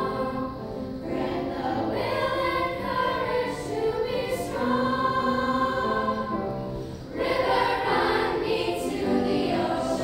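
Girls' choir singing held notes in harmony, dipping briefly in level just before seven seconds in and then coming back louder.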